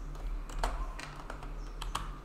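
A few irregular keystrokes on a computer keyboard, bunched together near the end, over a low steady hum.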